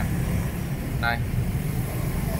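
Steady low rumble of road traffic, with one short spoken word about a second in.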